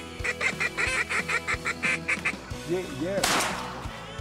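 A rapid, evenly spaced run of about a dozen duck quacks, then a few lower honking notes, over background music. A loud burst about three seconds in fades out over about half a second.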